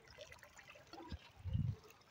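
Calm sea water lapping and trickling faintly against shoreline rocks, with a brief low rumble about one and a half seconds in.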